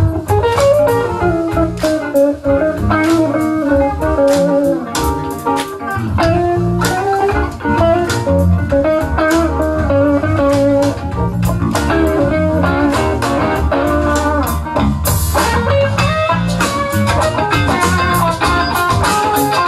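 Live band playing a bluesy instrumental passage, electric guitar prominent over drums, bass and keyboard.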